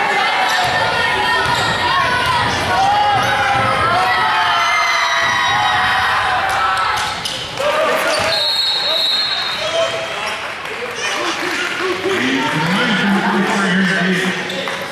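Basketball game in a gym: the crowd's and players' voices go on throughout, with a basketball bouncing and scattered knocks on the court. A flat, high whistle sounds for about a second, roughly eight seconds in.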